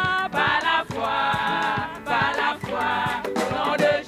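A choir singing a gospel song in phrases of about a second each, with a beat underneath.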